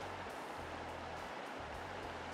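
Steady rushing of a shallow creek, with a quiet, low background music bed underneath.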